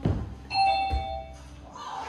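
A thump, then a two-note electronic chime starting about half a second later: a higher ding followed by a lower dong, ringing out for about a second.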